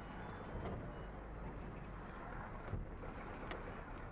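Steady low rumble and road noise of a vehicle on the move, with a couple of light knocks about three seconds in.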